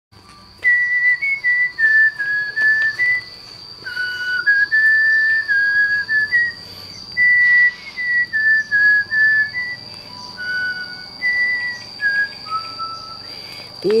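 A person whistling a simple tune: clear single notes stepping up and down in short phrases with pauses between them.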